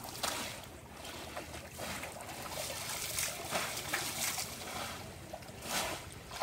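Shallow pond water sloshing and splashing in irregular bursts as several people wade through it and push bamboo polo fish traps into the water, with a cluster of splashes in the middle and another near the end.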